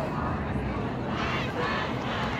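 A voice shouting a protest slogan, in one loud call from about a second in, over a steady low rumble.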